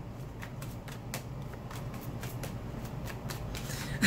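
A deck of tarot cards being shuffled by hand, a rapid irregular patter of card clicks.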